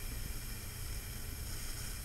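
Steady background hiss with a low hum: room tone, with no distinct event.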